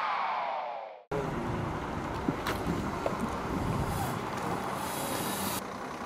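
A falling electronic sweep fades out in the first second. After a sudden cut comes outdoor sound beside a parked coach whose engine runs steadily, with a couple of light knocks a little after two seconds in.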